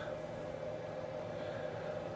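Faint steady hum and hiss with no distinct events.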